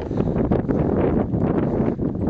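Wind buffeting the camera's microphone: a loud, uneven noise that swells and dips from moment to moment.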